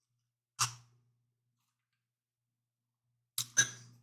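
Short mouth and breath sounds of a person tasting a cocktail: one brief sip sound about half a second in, then two quick breaths or smacks near the end, with near silence in between.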